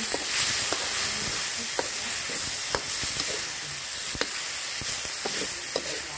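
Stir-fried rice noodles sizzling in a hot wok while a metal spatula turns them, scraping the pan. The spatula clinks against the wok about once a second.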